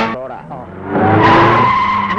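Car tyres screeching, a loud steady squeal that starts about a second in.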